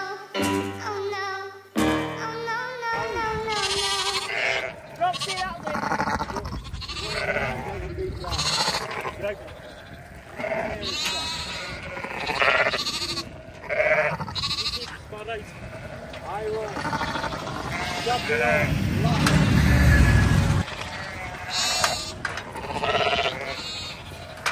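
Penned ewes and lambs bleating, many calls overlapping throughout, after a guitar music track fades out in the first few seconds. A loud low rumble lasts a couple of seconds near the end.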